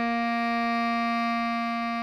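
A single bass clarinet note, written C5 (sounding B♭3), held at a steady, even pitch and level.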